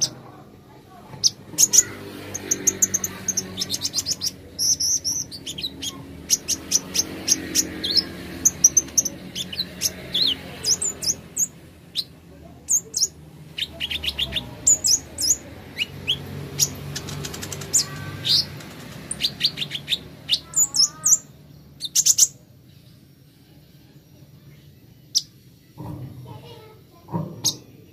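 Kolibri ninja sunbird singing: rapid runs of short, high-pitched chirps and trills in bursts, with a brief pause near the middle and few notes in the last few seconds.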